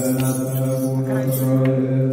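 Male voices chanting together on one long held low note: Ethiopian Orthodox liturgical chant, with a faint brief jingle of a hand sistrum.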